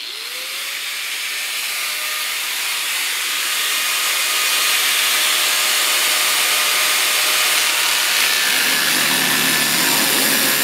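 Angle grinder switched on, its motor spinning up with a rising whine, then grinding into the car's sheet-metal roof panel. The sound grows louder over the first few seconds and takes on a deeper note near the end as the disc bites harder.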